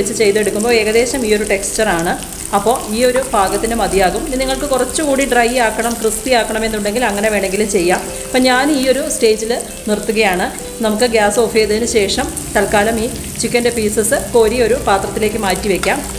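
Marinated chicken pieces sizzling as they fry in butter in a pan, turned now and then with a spatula. A person's voice talks over it almost throughout and is the loudest sound.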